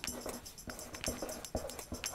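Felt-tip marker on paper while handwriting, with short scratchy strokes and a few brief faint squeaks.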